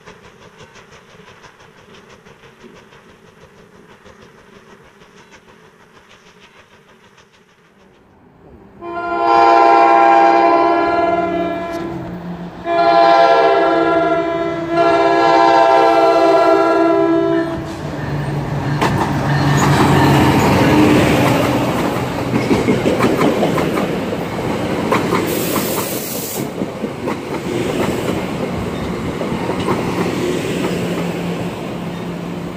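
An NJ Transit diesel-hauled commuter train sounds its multi-note air horn in three long blasts as it approaches, then passes close by with engine rumble and the clickety-clack of wheels over rail joints. A brief hiss comes partway through the pass. The first seconds hold only a faint steady hum.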